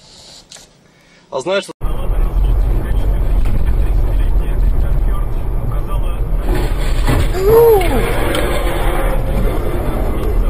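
Steady, loud low rumble of a car driving, heard through a dashcam inside the cabin, starting abruptly about two seconds in. About three-quarters of the way through there is a brief tone that rises and then falls.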